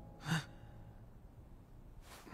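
A man's short, breathy "huh" exhale, heard once about a quarter second in, over faint background hiss.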